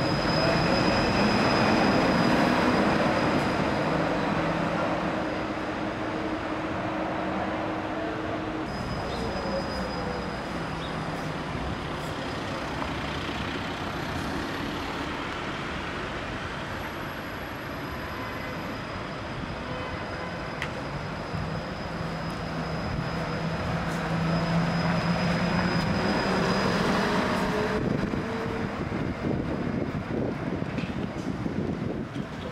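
Electric trolleybus driving past on a city street: tyre and road noise with a steady high electric whine from its drive. Louder at the start as one passes close, and again later in the clip.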